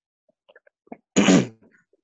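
A person's single short, sharp vocal burst, like a sneeze, about a second in, after a few faint clicks.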